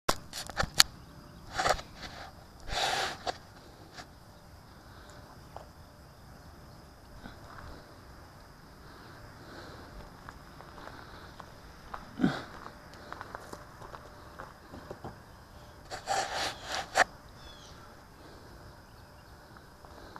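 Handling noise from the wing's onboard camera as the foam flying wing is picked up and carried: scattered knocks, rubs and rustles, with a cluster near the start, single knocks around 3 and 12 seconds in, and another cluster near the end. Between them only a faint steady outdoor hiss; the electric motor is not running.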